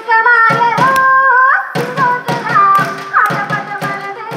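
Live Indian devotional song: a woman sings a solo line over held harmonium notes, with hand-drum strokes keeping the beat. The drum drops out briefly in the middle.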